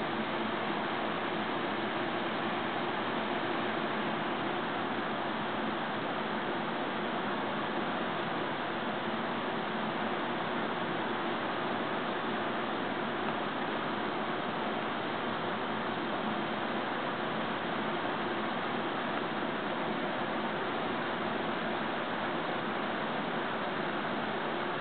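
Electric box fan running with a steady, even hiss and a faint low hum.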